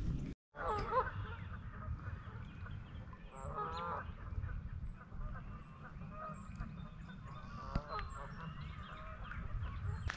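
Geese honking across the water in three short bouts: about a second in, near the middle, and near the end. Underneath is a steady low rumble, with faint high chirps of small birds.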